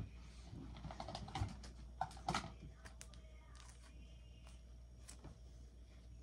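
Faint scattered light clicks and rustles of a person handling things and moving close to the microphone, thinning out after the first half, over a low steady hum.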